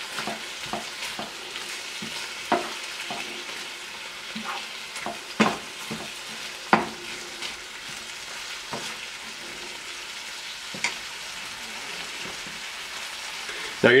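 Ground beef, diced onions and peppers sizzling steadily in a skillet as they are stirred with a wooden spoon, with occasional short knocks and scrapes of the spoon against the pan.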